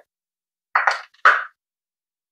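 Kitchenware knocking and clinking twice about a second in, the two knocks about half a second apart.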